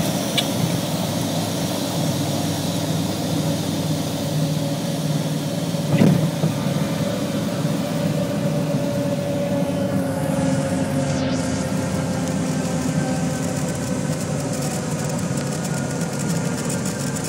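Propeller aircraft's engines running at idle inside the cabin during the landing rollout, a steady drone whose pitch sinks slightly as the plane slows. A single sharp thump about six seconds in.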